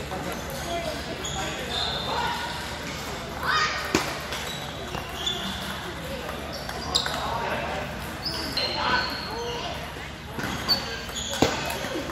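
Table tennis ball clicking off the table and paddles as a point is served and rallied, a few sharp clicks standing out, over a murmur of voices in a large hall.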